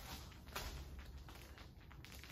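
Quiet room with a low steady hum and faint rustles of footsteps on plastic protective sheeting laid over new carpet.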